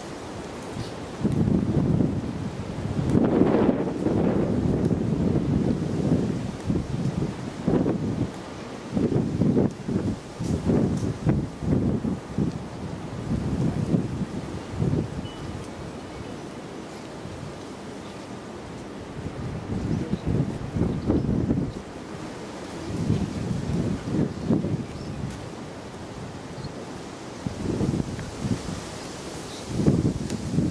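Wind buffeting the microphone in irregular low gusts, with quieter lulls between.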